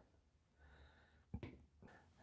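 Near silence: faint room tone, with one brief faint noise about a second and a half in.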